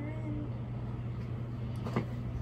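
Steady low background hum, with a short hum from a woman's voice at the start and a sharp click just before the end.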